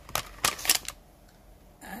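A few quick clicks and light rattles from a cardboard box of wooden watercolour pencils being handled and the pencils knocking together, all within the first second.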